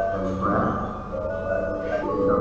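Recorded excerpt of an electroacoustic piece for cello and electronics, played back over loudspeakers: several held tones that step between pitches, with a brief swell about half a second in.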